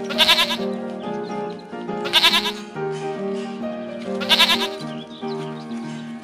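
Background music with a steady melody, with three loud quavering goat bleats about two seconds apart.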